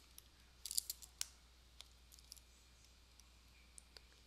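Faint, sparse clicks and light scratching of a stylus writing on a tablet, with a small cluster about a second in and a few single ticks after.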